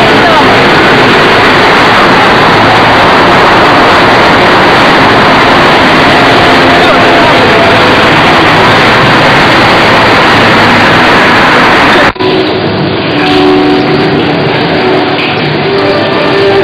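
A loud, steady rushing noise with a person's voice faintly under it; about twelve seconds in it cuts off suddenly and music with plucked strings takes over.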